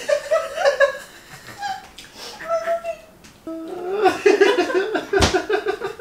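A woman laughing hard in fits, breaking into a long, breathless run of laughter in the second half. A single sharp smack about five seconds in.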